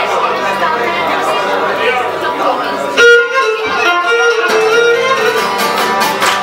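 Cretan lyra bowing a melody over a plucked lute accompaniment. About halfway through, the lyra comes in louder on a strong held note.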